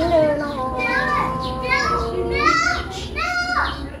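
Unaccompanied Tai (Black Thai) folk singing in the giao duyên courtship style: a voice holding long, drawn-out notes that slide between pitches, ending a phrase near the end.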